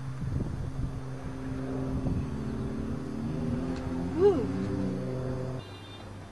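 A compact car's engine running at a steady speed as the car drives across a dirt field, with a brief rise in pitch about four seconds in. The engine sound drops away shortly before the end.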